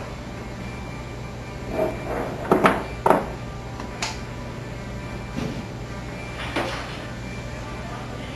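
Steel bearings clinking and knocking against each other and against a surface as they are handled and set down: a quick cluster of hard metallic knocks about two to three seconds in, then a few single ones, over a steady hum.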